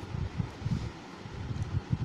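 A gap in a spoken voice recording with only low, uneven rumbling background noise picked up by the microphone.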